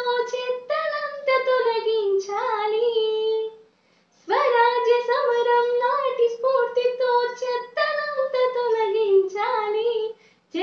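A girl singing a patriotic song solo and unaccompanied, holding long notes, with a short pause about four seconds in.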